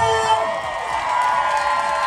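Crowd of spectators cheering and shouting, with music underneath.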